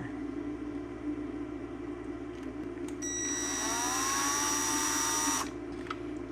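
Ridgid cordless drill-driver driving a screw: halfway in the motor whines up in pitch, runs about two seconds, then stops suddenly.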